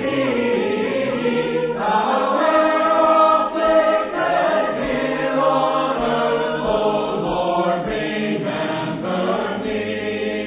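Church congregation singing a hymn unaccompanied, many voices together holding long, slow notes.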